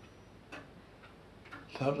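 Faint, short ticks about once a second in a quiet room, with a man's voice starting up again near the end.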